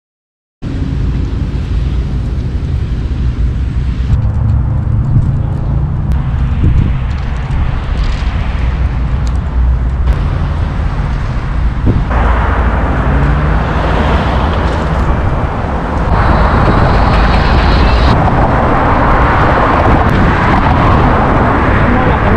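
Wind buffeting the camera microphone while riding an electric unicycle at speed, a loud, rough, steady rumble. It starts abruptly about half a second in and grows louder and brighter in the second half.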